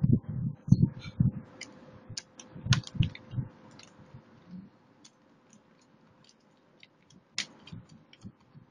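Screws being driven back into the plastic underside of a laptop case by hand: irregular small clicks and ticks of the screwdriver and screws, with dull knocks of handling the casing in the first few seconds.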